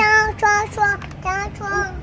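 A young child's high voice in a sing-song chant: short syllables on held, level pitches.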